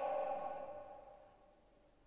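The last words of a man's voice through a church's sound system ringing on in the hall's reverberation, a steady tone fading away over about a second, then near silence.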